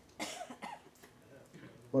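A man coughs once, briefly, with a smaller sound just after it.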